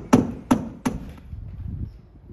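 Hand hammer driving nails overhead into the wooden eave. Three sharp strikes about three a second, all in the first second.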